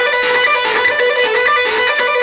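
Electric guitar playing a fast picked lead lick that combines a sixteenth-note pattern with a second rhythmic pattern, a quick run of short notes that keeps returning to the same note about every half second.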